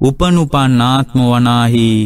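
A Buddhist monk chanting in the melodic sermon style, his voice rising and falling in three phrases, the last held steady for most of a second.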